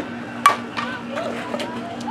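Softball bat hitting a pitched ball: one sharp crack about half a second in, followed by a few fainter knocks and voices.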